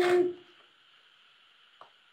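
A loud sound with a steady hum-like tone and hiss cuts off within the first half second. Near silence follows: a faint steady hiss and one small click near the end.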